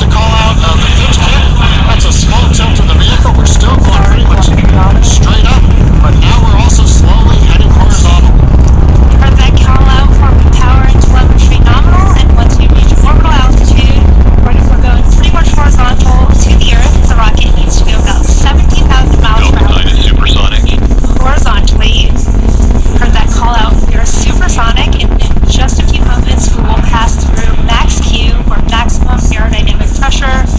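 Falcon 9 first stage's nine Merlin 1D engines heard from the ground during ascent: a loud, steady deep rumble with sharp crackles running through it. People's voices and shouts rise over it.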